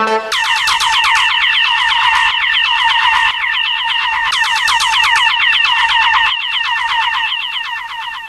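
Electronic dance music breakdown: a synthesizer line of rapid downward-sweeping zaps, about eight a second, with the bass and beat dropped out just after the start.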